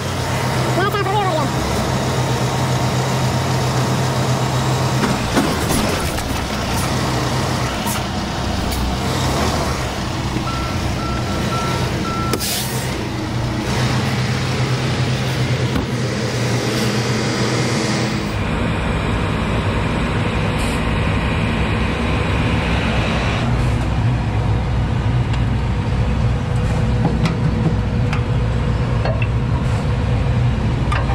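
Semi tractor's diesel engine idling steadily, with a short run of beeps about ten seconds in. From about eighteen seconds on the engine sounds louder and deeper.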